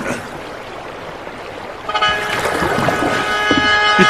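Water flowing and lapping at first; about two seconds in, film-score music comes in with a sustained, held chord and grows louder.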